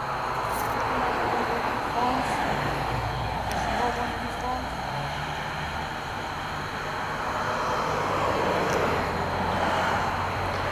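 Passing road traffic: cars going by, their tyre and engine noise swelling and fading, over a low steady hum.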